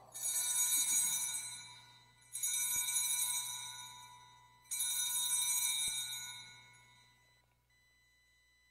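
Altar bells rung three times, about two seconds apart, each ring a cluster of high metallic tones that fades away: the consecration bells marking the elevation of the chalice.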